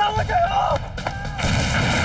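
An explosion goes off about one and a half seconds in, its blast carrying on as a steady rush of noise; just before it, a man shouts.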